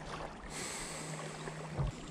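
Lakeshore ambience: a steady low hum under wind hiss on the microphone. The hiss grows stronger about half a second in, and there is a single dull knock near the end.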